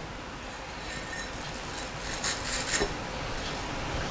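A scrubber rubbing inside a drinking glass: a few faint, brief scraping sounds about two to three seconds in, over quiet room tone.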